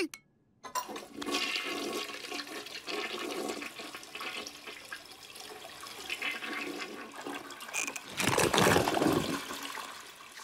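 Cartoon sound effect of a toilet flushing: rushing water for several seconds, with a louder surge near the end as the flush drains away.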